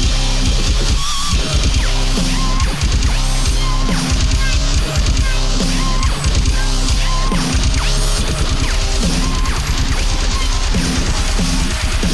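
Electronic drumstep track: fast, dense drums over heavy, distorted bass notes that change in a repeating pattern, with short wavering synth figures above.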